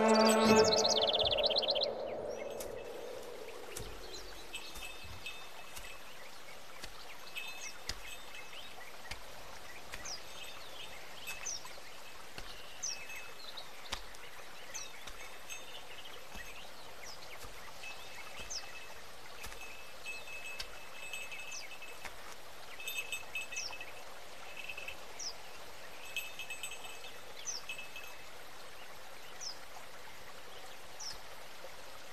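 Birds chirping in a forest: short, high chirps every second or two, with a few brief runs of twittering, over a steady faint outdoor hiss. Orchestral string music fades out in the first two seconds.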